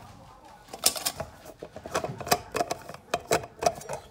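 A quick irregular run of sharp clicks and taps, about five a second, starting about a second in, as the steel-and-plastic lid of a Stanley wide-mouth vacuum food jar is gripped and unscrewed.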